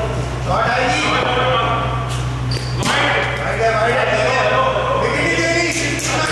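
Players' voices calling out in a large, echoing hall over a steady low hum, with a few sharp knocks about two to three seconds in and again near the end.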